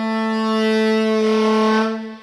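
Cannonball tenor saxophone holding one long note in an improvised solo, the tone growing brighter about halfway through and the note breaking off at the very end.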